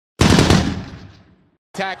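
A sudden, loud burst of rapid rattling noise that fades away over about a second, followed near the end by a man's commentating voice.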